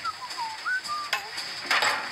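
A short run of clear, whistled-sounding notes sliding up and down in pitch, with a couple of light clattering or scraping noises about a second in and near the end.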